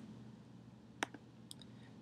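Computer mouse clicking: one sharp click about a second in, followed by two fainter clicks, over a faint low hum.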